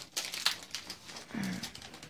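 Light crinkling and rustling of foil booster-pack wrappers and trading cards being handled, in many small scattered crackles, with a brief hum from a voice a little past halfway.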